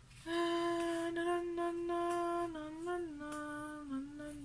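A woman humming one long held note that steps down lower about two and a half seconds in and wavers briefly before going on.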